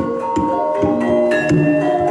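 Javanese gamelan playing: ringing bronze metallophone notes sustained over a few drum strokes.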